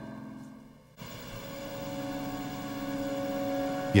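Background music fades out within the first second, then a sustained low drone of steady tones starts and slowly grows louder.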